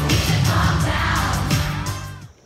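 Live pop music played loud through a concert sound system, with an audience cheering over it. The music fades out near the end.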